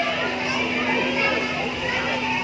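Riders on a spinning, flipping amusement park thrill ride screaming and shrieking, many voices overlapping. A steady low hum runs underneath.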